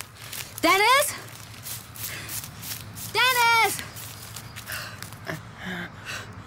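A woman's voice calling out loudly twice: a short rising call about a second in, then a longer held call a little after three seconds. Faint footsteps and rustling come in between.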